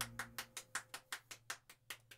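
A quick, even run of sharp clicks, about five a second, growing steadily fainter, over the faint tail of the fading music.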